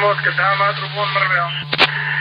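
Intercepted voice transmission: a man speaking Kurdish over a narrow, hissy channel with a steady low hum underneath. A sharp click comes near the end.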